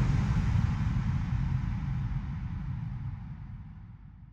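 A deep rumbling sound effect with a hiss above it, fading out steadily over about four seconds: the tail of the logo-reveal sound at the end of a product advertisement.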